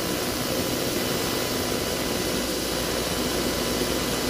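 Steady, even background hiss with a faint hum in a pause between speech, the noise floor under the recording.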